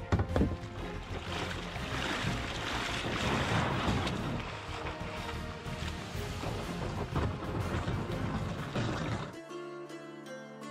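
Water splashing and lapping around a kayak, with music underneath. About nine seconds in, this cuts off and gives way to plucked-string music alone.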